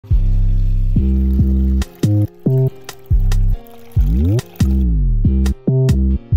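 Intro music: heavy, low synth-bass notes that start and stop abruptly, with a rising then falling pitch sweep about four seconds in. Under it runs a faint splashing hiss of water from the aquarium filter's spray outlet, which stops about five seconds in.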